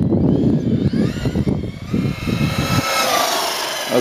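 Electric radio-controlled car on a 4S battery driven at full throttle, its motor whine rising and then falling in pitch as it speeds past, over a low rushing noise that dies away about three seconds in.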